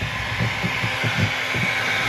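Hot air gun blowing steadily while butyl sound-deadening mat is warmed and pressed down with a small roller, with irregular low knocks from the handling.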